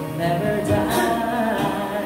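A man singing a ballad cover into a handheld microphone.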